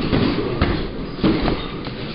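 Two boxers sparring in a ring: a few sharp thuds of gloved punches and feet landing on the canvas, over a low rattling rumble of the ring floor.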